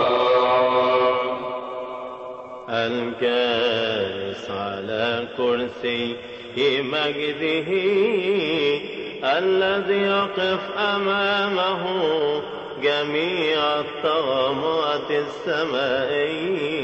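Coptic liturgical chant: a voice sings long, melismatic phrases with a wide wavering vibrato. A held note dies away about two seconds in, then a new phrase begins.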